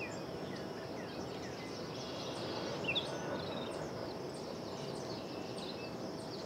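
Outdoor garden ambience: small birds chirping in short, scattered calls over a steady background hiss, with one call a little louder about three seconds in.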